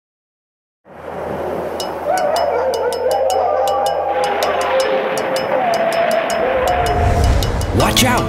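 Silence for about the first second, then a cartoon Halloween sound-effect bed: a wolf howling at length, a second wavering howl following, over a wash of eerie wind and faint ticks. A low rumble builds near the end.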